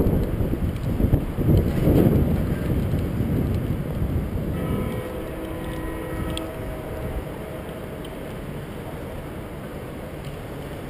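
Wind buffeting an action camera's microphone, loud at first and easing off about halfway through, with a few faint steady tones briefly heard in the middle.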